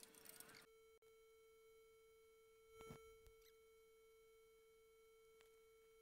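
Near silence: a faint steady electronic tone, with a couple of faint ticks about three and five and a half seconds in.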